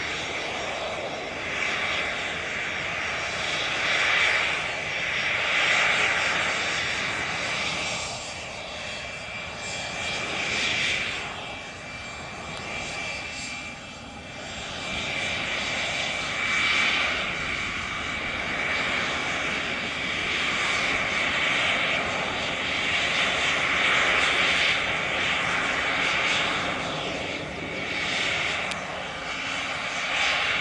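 Cessna 525 CitationJet's twin Williams FJ44 turbofans running at taxi power as the jet rolls along the runway. A steady high whine sits over a rushing hiss that swells and fades every few seconds.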